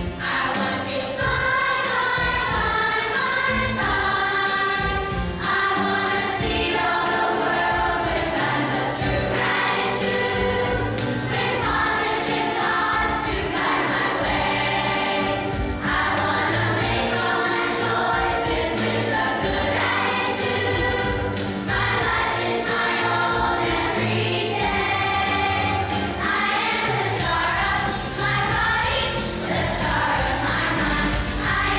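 A children's choir of third graders singing together with instrumental accompaniment. Steady bass notes run under the voices.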